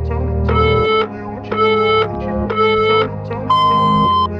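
Electronic countdown beeps over background music: three short beeps about a second apart, then a higher, longer beep that signals the start of the exercise interval.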